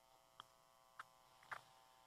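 Near silence in a sermon pause: a faint steady electrical hum in the sound system, with three faint soft clicks about half a second apart.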